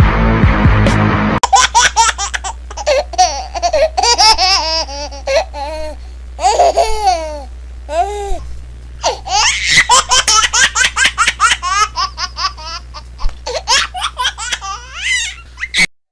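A recorded baby's laughter in quick, repeated giggling bursts, used as a sound effect. It follows a short musical jingle in the first second and a half, and a steady low hum runs underneath.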